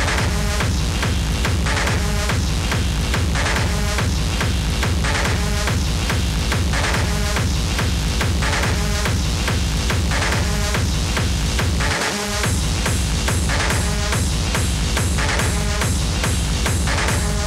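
Hard techno playing: a steady, fast four-on-the-floor kick drum with a dense bass line and repeating synth stabs above it. The kick and bass drop out briefly about three-quarters of the way through, then come back in.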